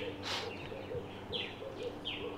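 Wild birds calling. Short, high, falling chirps repeat several times from about halfway through, over a soft, low, pulsing call.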